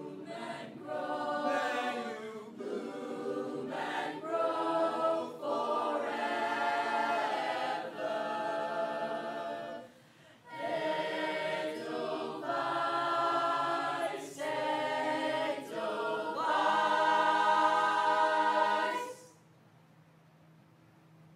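Mixed-voice youth chamber choir singing a cappella in harmony, phrase after phrase with a short break about halfway. It builds to a loud held chord that is cut off sharply near the end.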